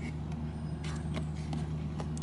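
A steady low motor hum runs throughout, with a few faint short taps near the middle.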